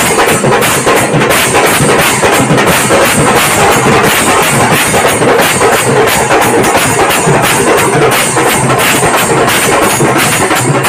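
A group of large brass hand cymbals (jhanjh) clashing together in a fast, steady rhythm over a drum beat, loud and continuous.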